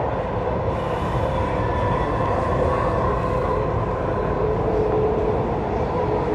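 Dubai Metro electric train running along its elevated track, heard from inside the carriage: a steady rumble with a faint, even whine.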